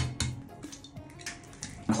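An egg cracked sharply twice against the rim of a glass blender jar, then softer wet sounds as it empties into the jar.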